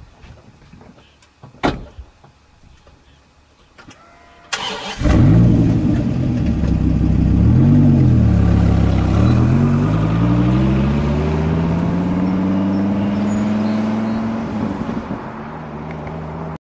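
Dodge Viper's V10 engine starting about four and a half seconds in, then revving up and down before a long steady climb in pitch that eases off near the end.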